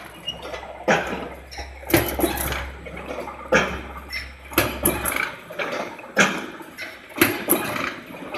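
Automatic welded wire mesh machine running, its welding and feed cycle giving a rhythmic metallic clatter about once a second, over a low hum that cuts off about five seconds in.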